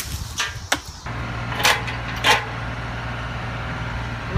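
Sharp cracks of wood, a few single snaps, the loudest two about a second and a half in and just over two seconds in, as a chainsawed tree branch breaks. A steady low hum runs under them from about a second in.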